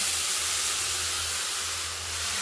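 Water poured into a hot kadai of roasted semolina, hissing steadily as it hits the hot pan; the hiss eases off a little near the end.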